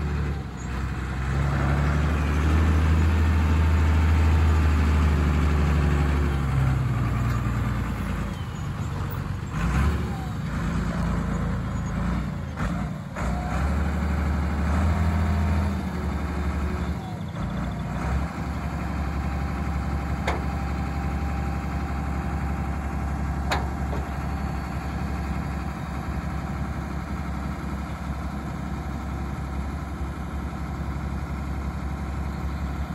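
A farm tractor's diesel engine running while the trailed field sprayer's boom is unfolded. The engine is louder, with its pitch rising and falling, for the first several seconds, then runs steadily, with a few short sharp clicks along the way.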